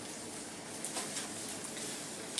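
Quiet room with a few faint, soft clicks of a small child chewing a bite of soft muffin.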